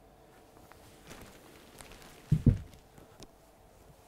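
A gas-strut lift-up bed platform being lowered shut, with faint rustling and handling noises and then one dull, low thump about two and a half seconds in as it comes down onto the frame.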